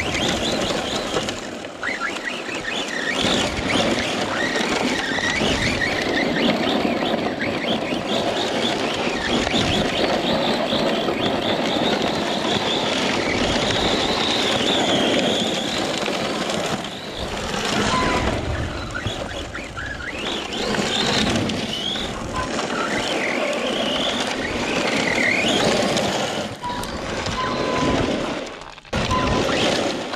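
Electric Arrma Mojave 4S RC truck driven hard on loose gravel: its brushless motor whines, rising and falling in pitch with the throttle, over a steady rush of tyres and stones. The sound dips briefly near the end.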